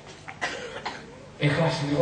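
A man coughs briefly twice, then clears his throat with a louder voiced hum, close to a microphone.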